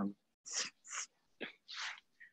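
Four short breathy hisses over a video call, from a person breathing close to the phone's microphone during a pause in speech.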